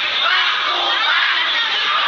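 Crowd of fans cheering and shouting, many high voices overlapping in a steady, loud din.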